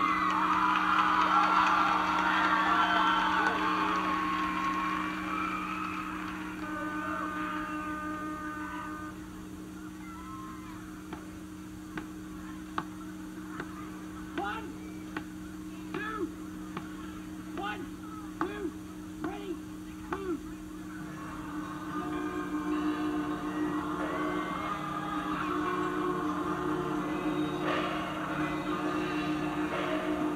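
A high school marching band show played back from a cassette through a boombox speaker, with a steady low hum under it all. First comes a few seconds of crowd noise, then a brief held brass chord, then a run of separate drum strikes about a second apart. From about two-thirds of the way in, the full band plays.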